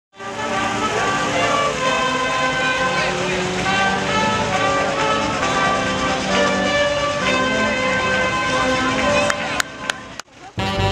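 Brass band of trombones and trumpets playing a tune, the notes held and changing in step. The music cuts off abruptly just before the end.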